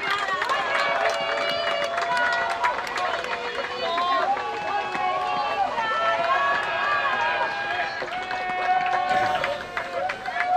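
Several excited young voices shouting and calling out over one another in celebration of a goal, with scattered short claps or knocks among them.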